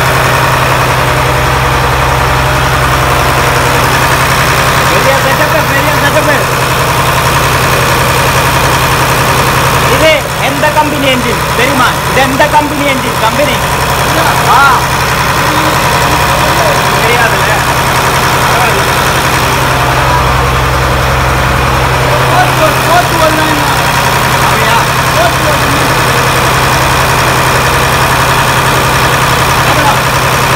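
Fishing boat's inboard diesel engine running steadily, heard up close in the engine room, with people's voices over it in the middle.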